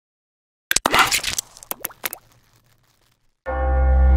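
A quick run of sharp plopping clicks, then a short gap. About three and a half seconds in, a loud, deep sustained tone with many overtones starts suddenly and holds, like a low bell or drone opening the trailer's score.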